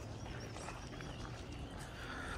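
Outdoor ambience: wind rumbling on the microphone, with faint scattered clicks and a few faint high chirps.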